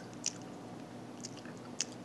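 Faint mouth noises from tasting a sauce: a few short, soft lip smacks and tongue clicks spread through the two seconds over quiet room tone.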